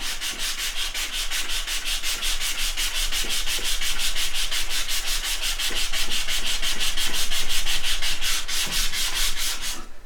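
Hand sanding a small piece of wood with sandpaper: fast, even back-and-forth strokes, about five a second, stopping just before the end.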